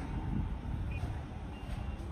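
Air-cooled single-cylinder 173F diesel engine of a Kisankraft power weeder running with a low, steady rumble.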